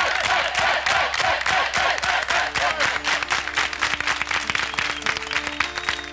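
Studio audience applauding. The clapping thins out toward the end as the band's first held notes come in, starting about two seconds in.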